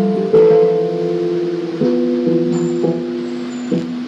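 Keyboard playing a slow sequence of held chords, each sustained for about a second before changing to the next.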